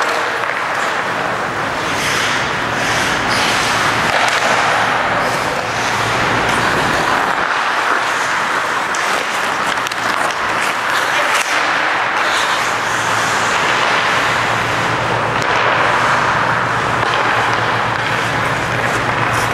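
Ice hockey skates carving and scraping the ice in a steady hiss, with occasional sharp clacks of sticks and puck, over a low steady hum.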